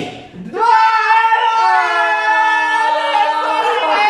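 A champagne cork pops, then several people cheer and shout together with long held voices for about three seconds.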